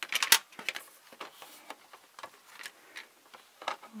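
Hard plastic toy playset pieces being handled, clicking and tapping against each other and the table: a few sharper clicks in the first second, then scattered faint ones.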